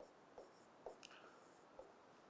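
Near silence with a few faint ticks and scratches of a pen drawing on a screen.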